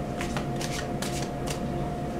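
A tarot deck being shuffled by hand: a quick, uneven run of short card flicks and snaps.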